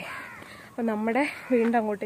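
A woman's voice talking in short phrases, with a rough, noisy call in the background at the start and again about a second in.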